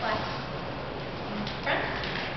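A young Rottweiler gives one short, bark-like vocalisation about one and a half seconds in.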